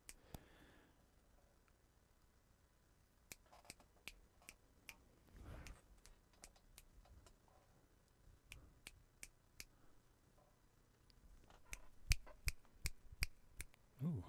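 Faint, sharp clicks of buttons and controls on a mixing desk being pressed: a few scattered clicks early, a few more in the middle, and a quicker run near the end.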